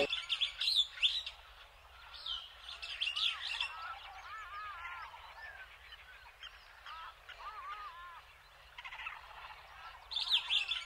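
Birds chirping, a scatter of short rising and falling calls with brief pauses between them, busiest in the first few seconds and thinner in the middle.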